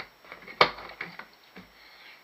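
The latches and lid of a plastic organizer box clicking open as it is unfastened and lifted: a sharp click about half a second in, followed by a few fainter clicks and knocks.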